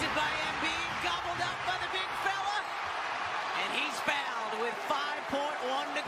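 Basketball arena crowd noise with scattered shouts, and sneakers squeaking on the hardwood court. One sharp knock about four seconds in.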